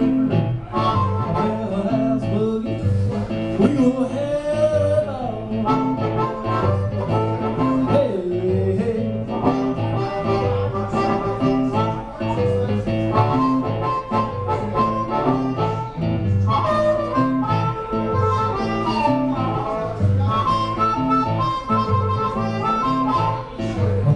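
Live blues harmonica solo with bent, sliding notes over an archtop guitar keeping a steady boogie rhythm.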